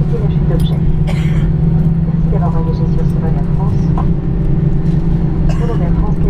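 Steady engine and rolling rumble heard inside an airliner cabin while the plane moves along the runway on the ground, with a constant low drone and faint passenger voices in the background.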